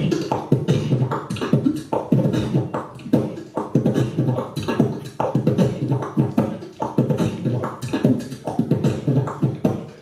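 Beatboxing into a microphone: vocal drum sounds in a steady, fast rhythm.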